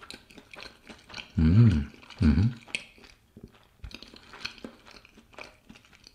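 A person chewing a mouthful of soft steamed bun with vegetable filling: small, faint mouth clicks throughout. Around two seconds in there are two short, louder hummed "mm" sounds with the mouth closed.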